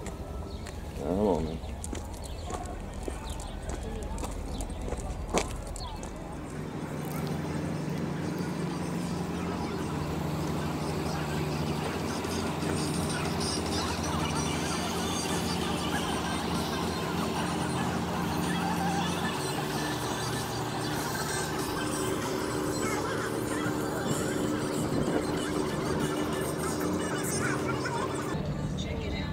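Harbour ambience: a steady low hum that comes in about six seconds in and holds, with distant voices.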